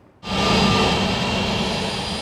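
Embraer E-Jet airliner's turbofan engines running loud on the runway, a steady rushing roar with a high whine over it, cutting in suddenly about a quarter second in and easing slightly toward the end.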